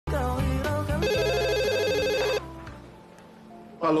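A short burst of theme music, then a telephone ringing with a fast electronic warble for about a second and a half before it cuts off sharply.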